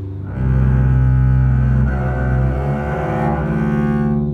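Double bass bowed arco: a low sustained note comes in about a third of a second in, then the pitch shifts to other notes in the second half.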